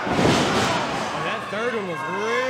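A wrestler's body hitting the ring canvas with a heavy thud that briefly rings through the ring, followed by voices shouting.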